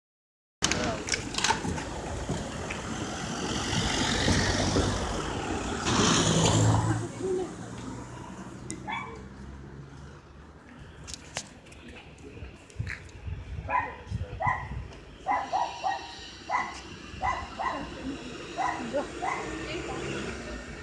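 Street sounds: a motor vehicle passes during the first several seconds, then a dog barks over and over in short, irregular calls.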